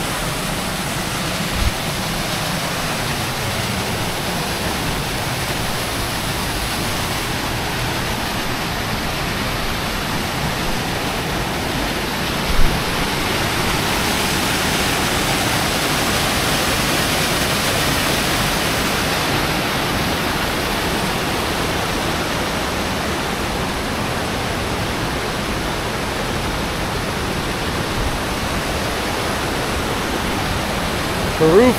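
Small waterfall splashing into a rocky pool and running stream: a steady rushing that swells slightly in the middle. Two brief low thumps, near the start and about twelve seconds in.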